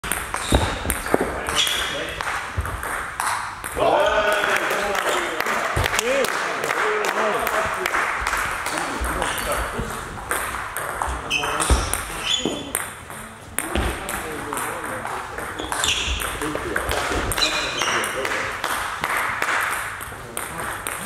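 Table tennis ball clicking off bats and the table in rallies, short sharp ticks in irregular runs, echoing in a sports hall.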